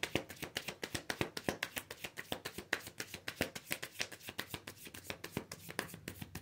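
Tarot cards being shuffled by hand, a rapid run of small card clicks at about eight to ten a second.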